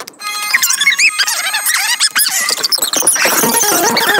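Cartoon soundtrack played at four times speed: dialogue and music pitched up into fast, high, squeaky chatter, after a brief drop-out right at the start.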